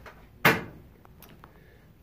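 A car door shutting once, about half a second in: a single thud with a short ring-out.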